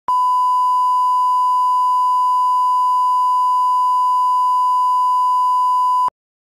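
Broadcast line-up test tone: a steady, loud, single-pitch 1 kHz reference beep of the kind that runs with colour bars for setting audio levels. It holds unchanged throughout and cuts off suddenly at the end.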